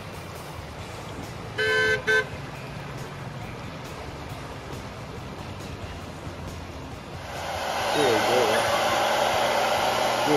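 Vehicle horn sounding twice, one short beep and then a shorter second one, about two seconds in, over a steady low rush of flowing creek water. About seven seconds in, a handheld hair dryer starts blowing, rises over a second, and runs on loud and steady.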